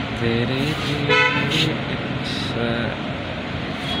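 A short vehicle horn honk about a second in, over steady street traffic noise.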